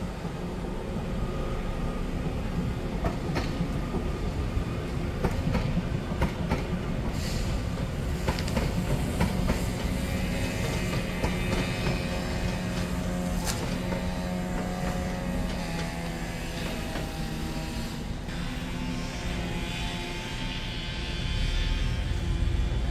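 A Northern multiple-unit passenger train moving through the station: a steady low drone with several held tones, and scattered clicks of wheels over rail joints.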